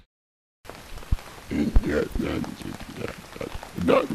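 A brief dead silence, then steady hiss with faint, muffled voice-like sounds in which no words can be made out, and two low thumps about a second in.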